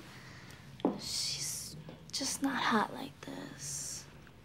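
A person whispering softly in short phrases, with breathy hisses between a few briefly voiced words.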